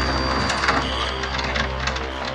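Loud, sustained synthesizer chord from a horror film score: a deep low drone under steady pitched notes and a thin high tone that fades after about a second and a half. A few short knocks sound within it.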